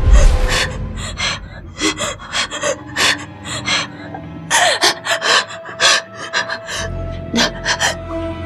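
A deep boom, then a woman's quick, sharp gasping breaths over a tense music cue, with a low drone coming in near the end.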